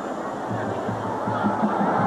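Stadium crowd din from an old television football broadcast, with music underneath.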